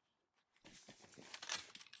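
About half a second of silence, then faint, irregular rustling and clicking as apple-tree branches are cut and moved during pruning.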